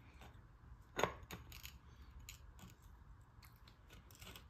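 A few light metal clicks as a steel bar is worked into the centre hub of a steering wheel to test its fit, the sharpest about a second in.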